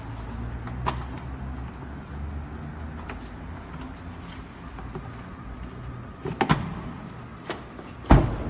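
Plastic clicks and knocks from a 2014 Mazda 3's glove box and cabin air filter housing being worked by hand as the filter is changed, a few sharp ones spread over several seconds with the loudest about six and a half seconds in, over a low steady rumble.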